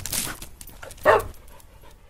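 A dog panting: short breathy huffs, with a louder one about a second in, then fading away.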